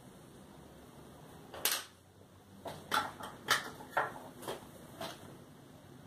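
Art supplies being handled: a quick run of about eight light clicks and clatters, small hard tools knocking together as one is picked out and taken up.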